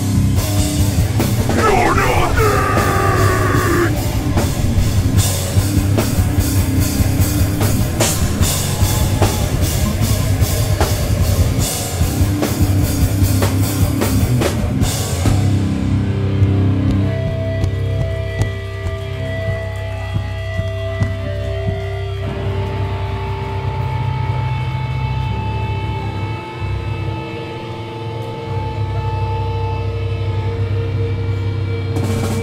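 Hardcore punk band playing live and loud, with pounding drums and distorted electric guitars. About fifteen seconds in, the drums stop and held, steady guitar tones ring on over a low amp hum.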